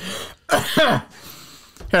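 A man clearing his throat: a short rasp, then a brief voiced grunt within the first second.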